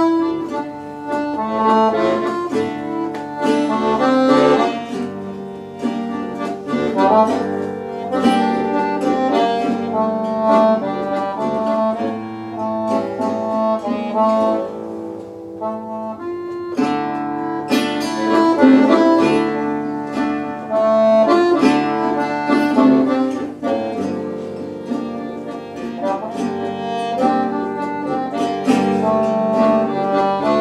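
Piano accordion and acoustic guitar playing a slow tune together, the accordion holding sustained notes and chords over the guitar's picked accompaniment. The music thins briefly about halfway through, then comes back in full.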